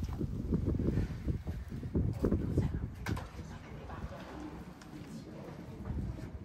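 A pigeon cooing, louder in the first half.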